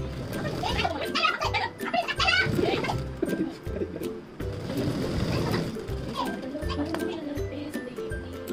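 Sewing machine running in short on-and-off bursts as fabric is fed through, with voices and music in the background.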